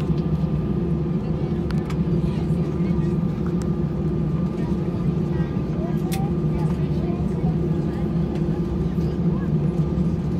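Airbus A320 cabin noise while taxiing: the engines running at low power with a steady drone and a thin steady whine above it. Passengers' voices are faintly audible underneath.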